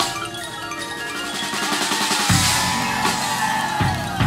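Marching band front ensemble (the pit) playing show music with drums and percussion; heavy low drum hits come in a little over two seconds in.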